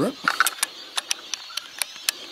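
Bolt-action rifle being handled with three cartridges loaded: a run of sharp metallic clicks as the rounds are worked into the magazine and the bolt is closed over them. With the rifle loaded this way, the owner says it won't feed the first round.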